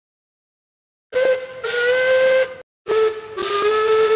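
Two blasts on a steam locomotive whistle, each about a second and a half long, the second following shortly after the first. Each is a steady pitched note with a breathy hiss of steam.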